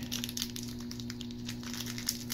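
A small clear plastic parts bag crinkling in irregular faint crackles as fingers rummage inside it for a servo arm.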